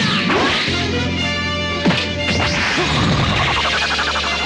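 Anime fight sound effects: punches landing with sharp whacks and whooshes, the loudest hit about two seconds in, over dramatic background music with held tones.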